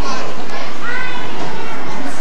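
Many children's voices shouting and chattering at once, with one high drawn-out child's voice about a second in.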